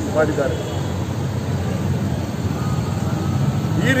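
Steady low background rumble from a roadside, under a pause in a man's speech; a few spoken words come just after the start and again near the end.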